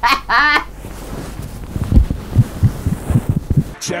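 A woman's short laugh, then a run of soft, irregular low thuds, about seven of them over two seconds.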